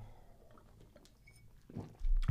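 Quiet, faint sounds of a man drinking from a glass and swallowing, with a short, low, soft sound near the end.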